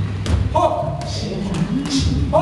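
Boxing gloves landing punches during sparring: a couple of sharp thuds, with a short shout about half a second in.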